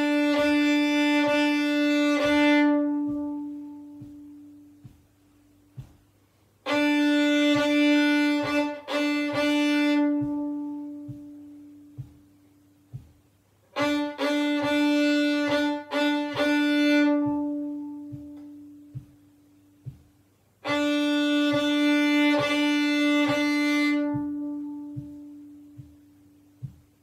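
Fiddle bowing short rhythms on the open D string: four phrases of repeated notes, all on the same pitch, each about three to four seconds long, with pauses of about three seconds between them. It is a call-and-response rhythm exercise.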